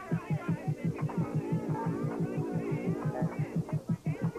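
Electronic horror-film score: a low throbbing pulse, about six beats a second, with eerie gliding tones above it.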